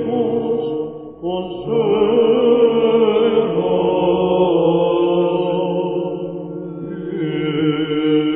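Solo Greek Orthodox Byzantine chant: a cantor singing a long, ornamented melisma in plagal first mode over a steady held low note, with a short break about a second in before the melody resumes.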